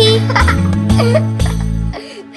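The closing phrase of a children's nursery-rhyme song: a voice sings the last words over bouncy backing music with a steady bass line. The music stops abruptly at the very end.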